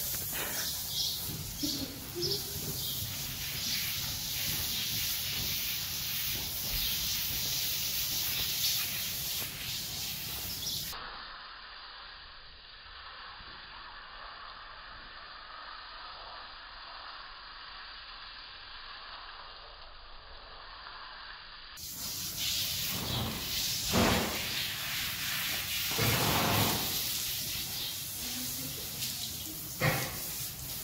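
Garden hose spray nozzle spraying water onto a horse's wet coat: a steady hiss of spray with splashing. For about ten seconds in the middle it drops to a quieter, duller sound, and a couple of knocks come near the end.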